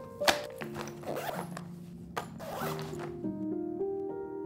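A zipper pulled in a few short rasping strokes, the sharpest about a third of a second in, over background music with held notes.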